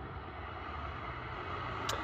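Faint, steady low rumble of distant road traffic, slowly growing a little louder, with a single short click near the end.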